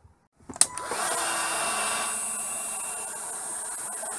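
Hot air gun switched on with a click, then blowing steadily with a faint hum, shrinking heat-shrink sleeving over a crimped spade terminal on a banana-plug lead.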